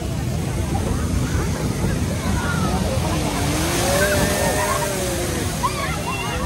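A moving amusement-park ride car rumbles steadily, with wind buffeting the microphone. Faint distant voices call out about halfway through.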